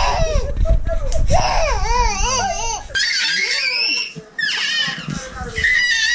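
Baby vocalizing excitedly: a run of high-pitched, wavering squeals and cries with short pauses between them.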